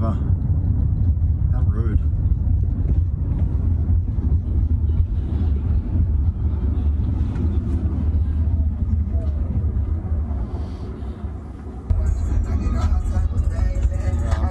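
Steady low road rumble inside the cabin of a driverless Waymo ride-share car as it drives, picked up by a phone. The rumble dips about ten seconds in, and about twelve seconds in music starts playing in the car.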